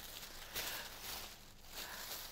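Faint rustling of a plastic garbage-bag parachute being handled, in a few soft rustles.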